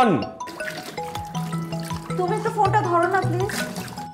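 Background music: a melody of short held notes, with a brief spoken word about two seconds in.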